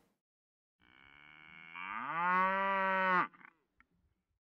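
A single cow moo: one long call that rises in pitch, then holds steady and stops sharply, lasting a little over two seconds.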